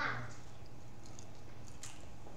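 Faint chewing and small crunches of someone eating, over a steady low hum.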